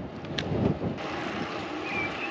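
Wind rushing over an action camera's microphone as a road bike rolls along, a steady noisy rush. There is one brief tick about half a second in.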